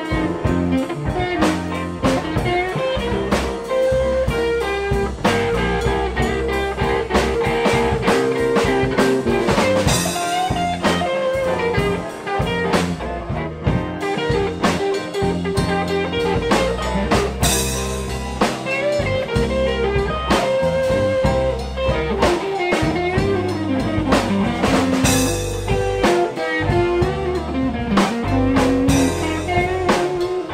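A live band jamming, with electric guitars over a Ludwig drum kit, played loud and steady through amps and PA speakers.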